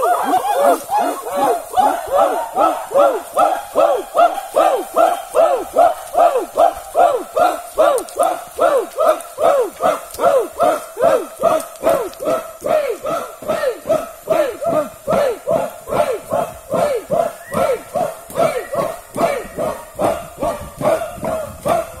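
A group of men chanting a rhythmic war cry in unison: short shouts, each falling in pitch, repeated about two to three times a second, with a longer held note beginning right at the end.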